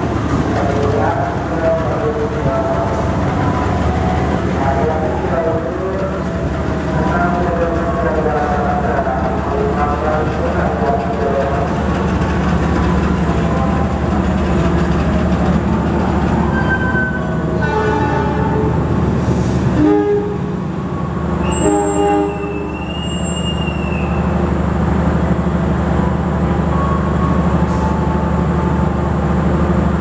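A diesel passenger train stands at the platform with its engines running in a steady low hum. Around the middle come short, high, shrill blasts of a conductor's whistle, the departure signal to the driver.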